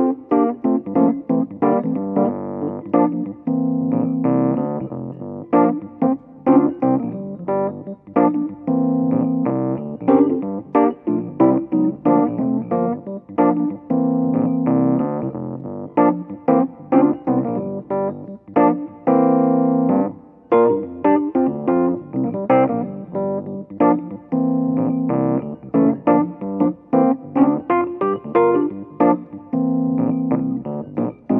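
Solo Rhodes electric piano playing a funky groove in G minor at 90 bpm. Held chords return about every five seconds, alternating with short staccato stabs.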